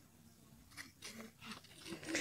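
Near silence on an open field, with a few faint, brief sounds in the second half.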